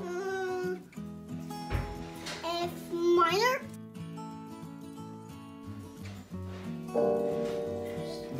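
Small electronic keyboard sounding held chords, with a new, louder chord pressed about seven seconds in. A voice rises and glides over it twice in the first four seconds.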